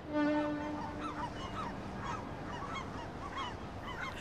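A ship's horn sounds once at the start, holding one steady note for about a second and a half as it fades. Then gulls call repeatedly over a steady background hiss, the harbour ambience of a ferry scene.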